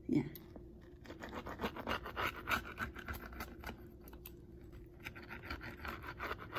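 A pizza-cutter wheel rolling through the baked crust of a pizza: a run of quick, scratchy, crackling clicks as the crust breaks under the blade, over a faint steady hum.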